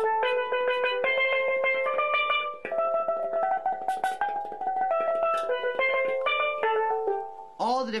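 Steel pan struck with rubber-tipped mallets, sounding its notes one after another up the scale to about halfway through and then back down, each note ringing into the next.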